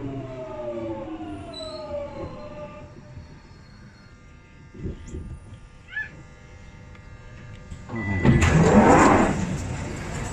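London Underground train's electric traction motors whining and falling in pitch as it brakes to a stop, followed by a few clicks. About eight seconds in, a loud rushing noise lasting about two seconds as the doors slide open.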